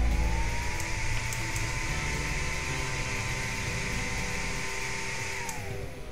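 Imalent MS32 flashlight's built-in cooling fans running at speed: a steady whir of air with a high whine, which winds down near the end.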